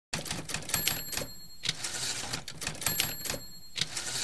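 Typewriter sound effect: a rapid run of key clacks, with a high ringing tone coming in twice for about a second each.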